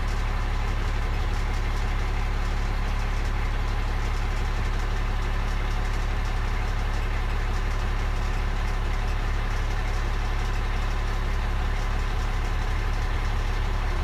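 A 2017 Mack truck's Cummins diesel engine idling steadily.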